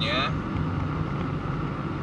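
Steady engine and road noise inside a moving car's cabin, a low even drone.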